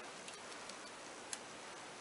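A few faint, short clicks, the sharpest about a second and a half in, as a Benefit Gimme Brow tube is handled and its brush wand drawn out, over a steady low hiss.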